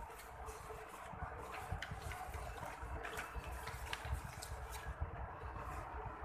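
Faint rustling and scattered light ticks of sheets of paper being handled and turned, over a low steady room hum.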